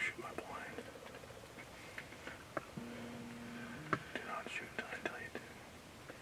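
Hushed whispering, in short breathy phrases at the start and again about four to five seconds in, with a few soft clicks and a brief low steady hum about three seconds in.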